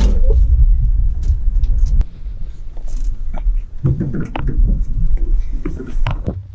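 A steady low rumble, loudest in the first two seconds, with brief snatches of voices and a few sharp knocks.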